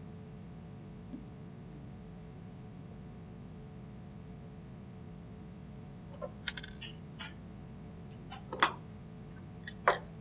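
Small clicks and rustles of hands handling fly-tying thread and flash material at a fly-tying vise, a few of them from about six seconds in, over a steady low room hum.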